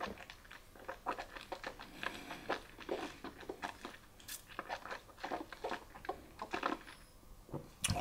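Quiet, irregular wet mouth clicks and lip smacks as a sip of whisky is worked around the mouth during tasting.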